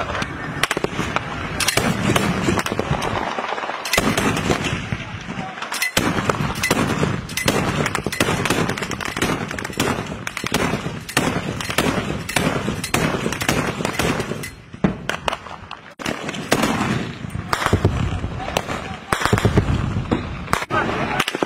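Gunfire: many sharp shots at irregular intervals, with people's voices underneath.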